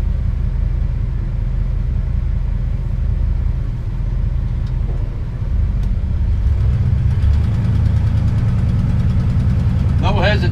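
Motorhome's gasoline engine running under way, heard from inside the cab, freshly fitted with a new distributor. It is a steady low rumble that grows louder and rises in pitch about six and a half seconds in as the coach accelerates.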